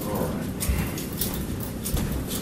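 Footsteps with a few light knocks and clicks as a person walks into a small room, over a steady hiss from heavily boosted recording audio.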